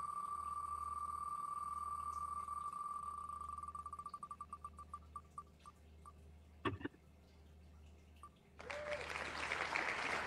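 Wheel of Names spinning-wheel ticks, so rapid at first that they run together into a steady tone, then slowing into separate ticks that die out about eight seconds in as the wheel stops. A burst of noise-like sound, the site's winner sound, rises near the end.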